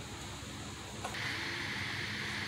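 Steady background hiss of room noise with no words. A faint click about a second in, after which the hiss turns brighter.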